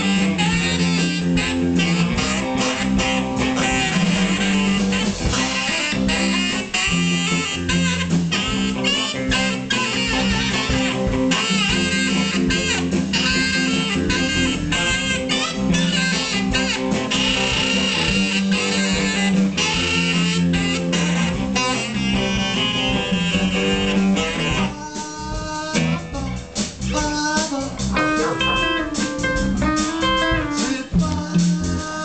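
Live blues band playing, with a saxophone and electric guitar over drums and bass. About 25 seconds in, the band drops to a quieter, sparser passage.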